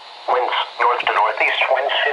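Computer-generated NOAA Weather Radio voice reading a winter storm watch, heard through a weather radio receiver's speaker, resuming after a brief pause at the start.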